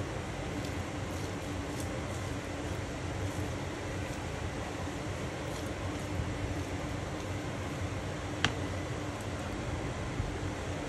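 Steady hum of a kitchen ventilation fan, with a single sharp click about eight and a half seconds in.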